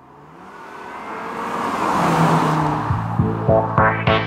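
A car's engine and road noise swelling over about two seconds, as on an approach or drive-by. About three seconds in, music with a steady funky beat comes in over it.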